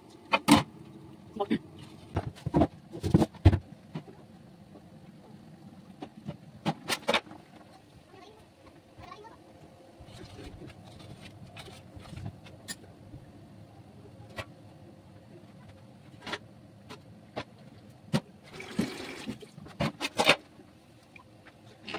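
Steel kitchenware clinking and knocking around a steamer pot: a dozen sharp clatters, the loudest bunched in the first few seconds. Near the end comes a rush of hissing steam as the steamer is opened.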